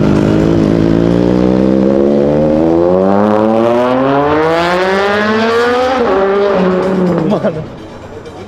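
Sport motorcycle engine accelerating hard from a standstill, its note rising steadily for about six seconds. It then drops at a gear change and fades out near the end.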